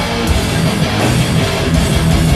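Heavy metal band playing live, electric guitars riffing over drums, loud and dense throughout.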